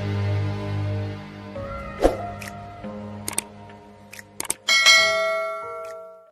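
The song's final held chord fades away over the first second and a half. A subscribe-button sound effect follows: a sharp ding about two seconds in, a few short clicks, then a bright bell chime near the end that rings on.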